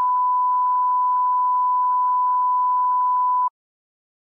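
Broadcast test tone, a single steady beep of one pitch played under a colour-bar 'technical difficulties' card. It cuts off suddenly near the end.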